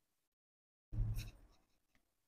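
A handheld board eraser makes one brief swipe across the touchscreen teaching board, about a second in.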